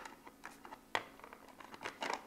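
A plastic cog being fitted by hand onto a plastic base: a few faint plastic clicks and taps, with one sharper click about a second in.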